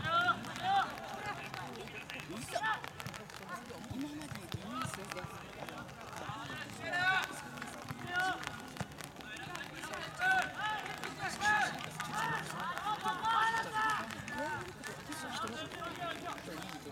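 Several voices shouting short, high-pitched calls across a football pitch, scattered through, busiest in the second half.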